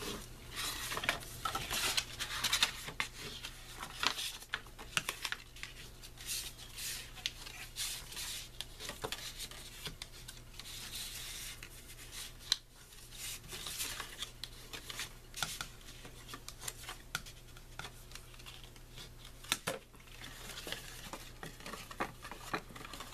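White cardstock being creased along its score lines with a bone folder and folded by hand: irregular scraping strokes and paper rustle, with many short crisp clicks as the folds snap over.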